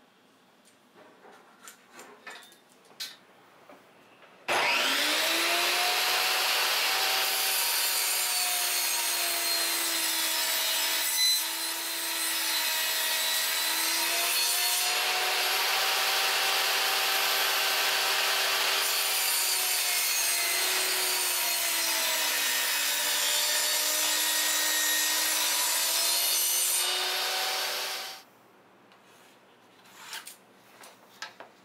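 Table saw starting up about four seconds in, its motor rising to speed, then running loud and steady while it cuts plywood. Its pitch sags and recovers several times as the blade takes the load. It stops abruptly near the end, and light taps and clicks of handling come before it starts.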